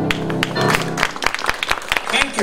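A jazz band's last chord, with piano and bass, dies away in the first second, and a small audience claps through the rest.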